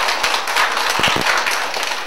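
Audience applauding, a dense patter of many hands clapping that eases off near the end.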